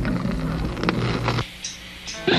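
Turntable and amplifier hum, a steady low buzz, with a few sharp clicks and scrapes as a vinyl record is handled on the spindle before the song starts. It drops quieter about a second and a half in.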